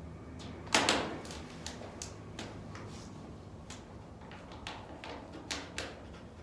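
Paper sheet of a vinyl decal, its backing removed, being handled and pressed against a glass door: scattered short clicks and crinkles, the loudest a sharp crackle just under a second in.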